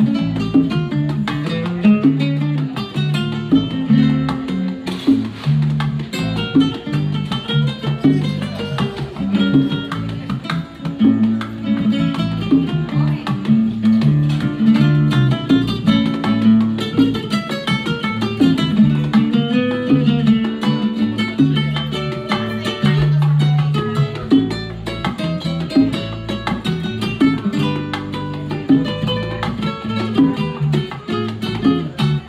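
Live Cuban son-style music: an acoustic guitar plays a plucked melody over electric bass lines and bongo hand drums, continuous and at full level, with no singing heard in the transcript.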